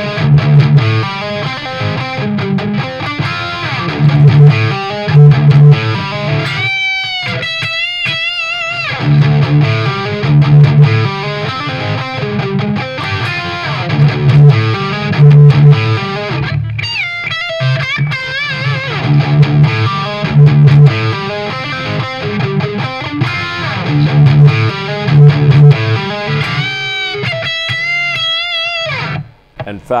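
Gibson Les Paul electric guitar tuned to drop D, played through a distorted amp. A repeating low riff is broken three times by sustained high notes with wide vibrato, and the playing stops just before the end.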